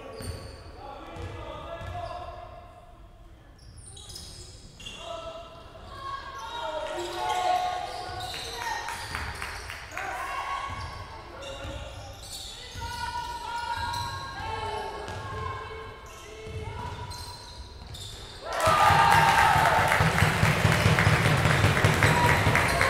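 Basketball bouncing on a wooden sports-hall floor during play, with players' shouts echoing in the hall. Near the end a much louder, dense noise comes in suddenly and stays.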